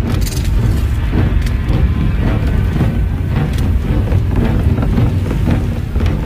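Anime soundtrack: a loud, steady low rumble with music underneath.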